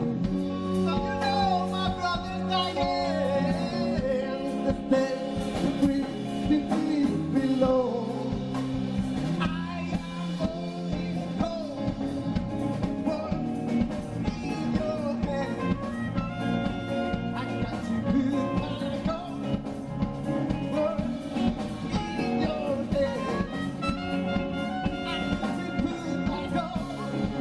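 A live band playing a song: a male singer over electric guitar, bass guitar and drum kit.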